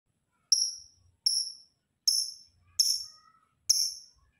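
Lovebird calling with sharp, high-pitched chirps, five of them about three-quarters of a second apart, each starting abruptly and fading away.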